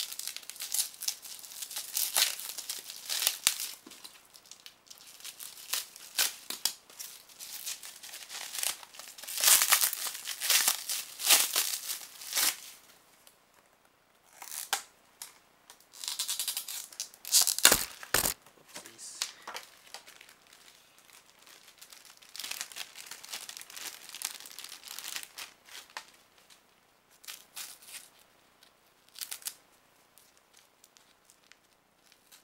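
Plastic bubble wrap being crinkled and torn open by hand, in irregular bursts of rustling with quieter pauses between. Two sharp knocks come just past the middle.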